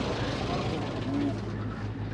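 Tractor engine idling with a steady low hum, with faint voices over it.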